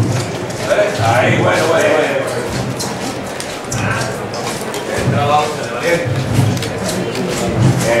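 Men's voices: brief spoken orders to the paso's bearers and other men talking, with many short scuffs and clicks throughout.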